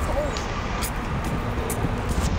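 Steady low rumble of road traffic and vehicles running at the curb, with a brief voice fragment near the start.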